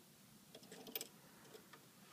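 Faint light clicks of tweezers and fingers handling the metal threading parts at the needle area of a Husqvarna Viking 200S serger. A few small ticks come about half a second in, and the clearest click comes about a second in, over near silence.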